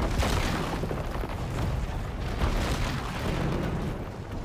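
Deep, continuous rumbling with several heavy booms, a cinematic sound effect of an ancient stone trap mechanism being set off.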